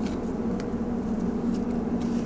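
Steady low background hum, with a few faint crinkles from filter paper being folded into a fluted filter.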